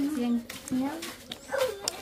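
Soft voices of people talking in the background, with a few light clicks.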